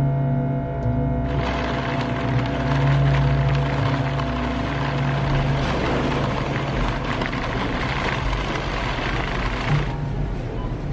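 Music with steady low drone tones, joined about a second in by a continuous noisy rattle of a wire shopping trolley being pushed along on its wheels.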